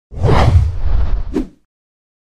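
Logo-sting sound effect: a loud whoosh with a deep rumble under it, lasting about a second and a half, with a short sharp hit near its end.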